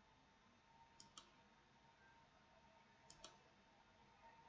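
Faint computer clicks in two quick pairs, about two seconds apart, over near-silent room tone, as notification settings are clicked through.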